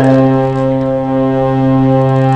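Background music: one sustained organ-like keyboard chord, held steadily as a drone.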